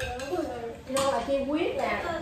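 People talking, with a sharp clink of a spoon against a bowl about a second in.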